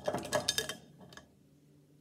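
Pens and coloured pencils clattering and clicking against each other and the sides of a cup as a hand stirs through them and draws one out. The rattle stops under a second in, with two last clicks after.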